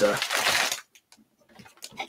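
A plastic bag of Lego pieces crinkling as it is handled, mixed with the tail of a man's sentence for the first part of a second. Then a brief quiet gap and a few faint rustles near the end.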